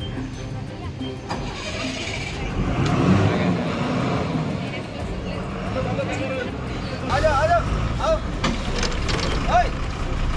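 Diesel bus engine running under load as the bus creeps round a slippery hairpin bend, rising in level about three seconds in and again near the end. Men's shouts break in over it in the last few seconds.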